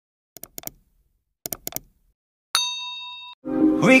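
Two quick runs of four sharp clicks, then a single bright bell-like ding that rings and fades for under a second. Near the end, a pop song with singing starts.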